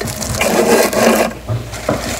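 Dry decor bunny and its sprig of lavender rustling and rubbing as they are handled close to the microphone: a rough scratchy rustle for about a second, then dying away.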